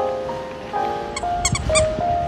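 Background music with sustained chords; a little past the middle, a small dog gives a quick run of four or five high-pitched yaps.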